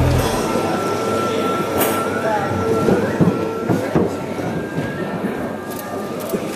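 Ambient soundtrack of noisy drone with a few held tones and short sliding pitches, slowly getting quieter.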